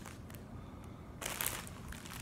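Soft crinkling of a clear plastic bag holding a folded T-shirt as it is handled; faint at first, more crinkling in the second half.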